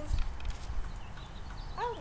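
Low outdoor rumble on a computer's microphone with faint scattered clicks, then a woman's voice starting near the end.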